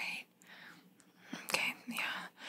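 A woman's soft whispered speech that breaks off briefly, with a gap of about a second before she resumes near the end.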